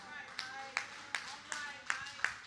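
One person clapping slowly and evenly, five claps in two seconds, with a faint voice under the first claps.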